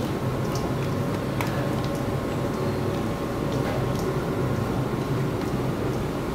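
Steady low hum of kitchen machinery with a faint high tone, and a few soft squelches of hands kneading chunks of raw rabbit meat in marinade in a steel bowl.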